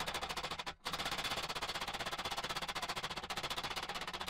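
Slag being knocked off a freshly laid stick-electrode weld bead: a fast, even rattle of metallic taps, with a brief break about a second in.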